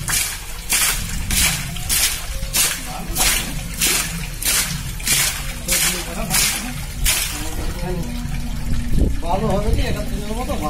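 Muddy water gushing out of the top of a hand-worked borewell drilling pipe with each up-and-down stroke, about one and a half splashes a second, stopping about seven seconds in.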